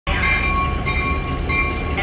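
Diesel switcher locomotive's bell ringing in a steady rhythm, about three strikes every two seconds, over the low rumble of its engine.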